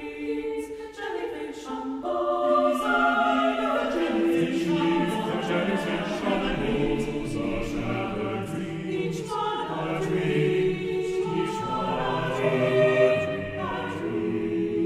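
Choir singing slow, sustained chords of overlapping held notes. Low voices join about four seconds in and the chord fills out.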